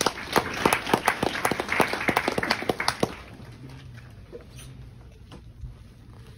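Small audience applauding, a dense patter of hand claps that dies away about three seconds in, leaving the room quiet with a few scattered small clicks.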